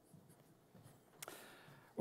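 Near silence: faint room tone with a few soft rustles and one small click about a second in.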